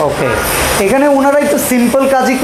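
A man talking, with rubbing noise on the microphone as it is handled.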